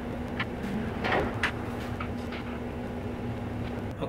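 A steady low mechanical hum with a few light knocks and a short scrape about a second in, as of tools or a floor jack being handled on a concrete garage floor.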